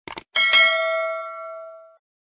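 Sound effect for a YouTube subscribe animation: two quick mouse clicks, then a single notification-bell ding that rings and dies away over about a second and a half.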